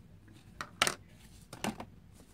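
Small hard cosmetic items or their plastic packaging clicking as they are handled: a sharp click a little under a second in and a softer pair past a second and a half.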